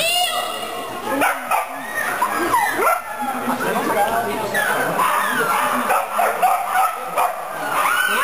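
A dog yipping and barking repeatedly in short, rising-and-falling calls, mixed with people's voices.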